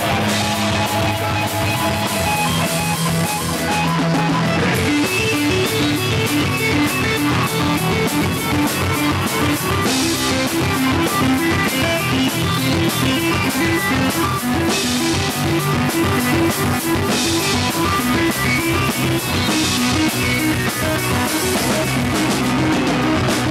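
Live rock band playing an instrumental passage: electric guitar picking a rapidly repeating riff over a drum kit, with cymbal crashes every few seconds.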